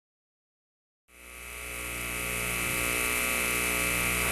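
Digital silence, then about a second in a steady electrical hum and hiss fades in and holds, made of many fixed tones.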